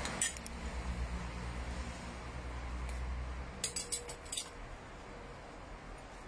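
A metal spoon clinking lightly against a ceramic bowl as a meatball is rolled in breadcrumbs: a couple of clicks near the start and a quick cluster about four seconds in, over a low steady rumble.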